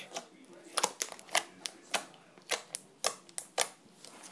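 Pink butter slime squished and pressed under the fingertips, giving a string of sharp, irregular clicks and pops, about a dozen over a few seconds.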